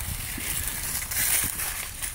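Dry fallen leaves rustling and crunching underfoot as someone shifts and steps on them.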